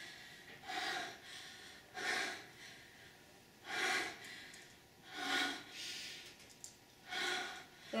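A person breathing heavily, with audible breaths coming in a steady rhythm about one every second and a half.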